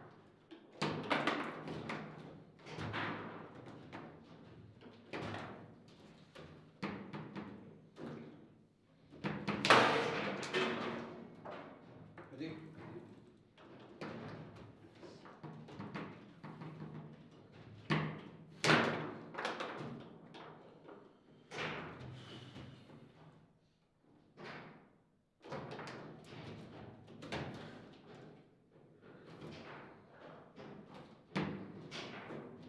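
Table football play: irregular sharp knocks and thuds as the ball is struck by the rod figures and hits the table walls, with the rods banging against the table. A few strikes are much louder than the rest.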